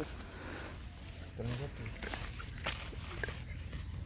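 Quiet handling and movement noise in wet mud and grass: a few light clicks and rustles as someone crouches, with a brief low murmur of a voice about a second and a half in.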